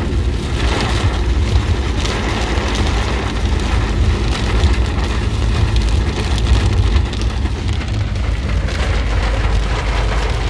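Heavy rain drumming on a car's roof and windshield, heard from inside the cabin as a dense, steady patter of drops, over a steady low rumble of the car driving.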